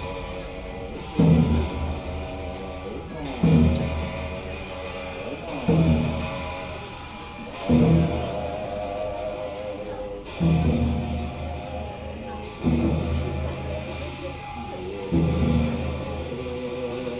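Tibetan monastic ritual music for the Black Hat cham dance: a loud crash-like strike about every two seconds, each ringing on and fading slowly into sustained low tones.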